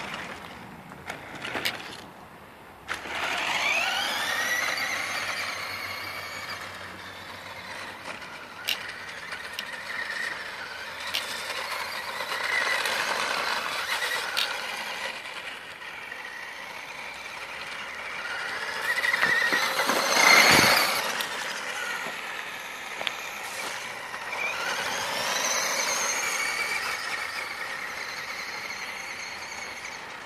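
Battery-powered toy-grade RC buggy's electric motor and drivetrain whining, rising and falling in pitch again and again as it speeds up, slows and spins. It is loudest about two-thirds of the way through, where there is also a brief thump.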